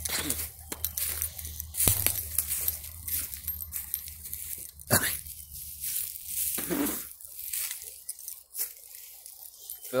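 Footsteps crunching and rustling through dry dead leaves and twigs, an irregular run of crunches with the sharpest about two, five and seven seconds in.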